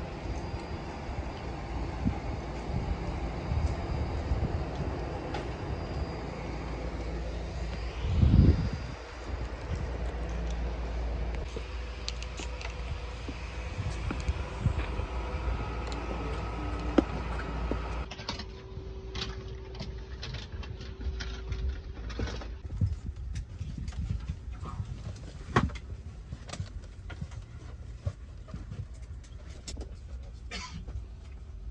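Airport apron noise: a steady low rumble of aircraft and ground equipment running, with a short loud buffet of wind on the microphone about eight seconds in. After about eighteen seconds the rumble drops away and scattered sharp clicks come through a quieter background.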